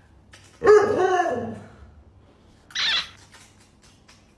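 A dog vocalizes with one drawn-out bark of about a second, bending in pitch, just under a second in. A short breathy burst of sound follows near the three-second mark.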